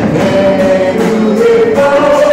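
A group of voices singing a Christian worship song together, holding long notes that step from one pitch to the next.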